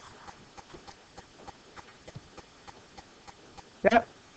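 A quick, even series of light clicks or taps, about three a second, with a short burst of a voice near the end.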